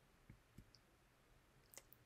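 Near silence: room tone with three faint, brief clicks.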